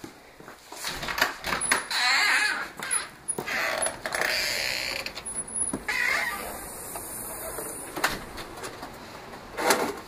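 Movement and handling noises: rustling and shuffling footsteps, with scattered clicks and knocks, a louder one near the end, as a painting is carried from one room to another.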